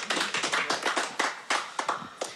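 A small audience applauding: a quick patter of separate hand claps that thins out near the end.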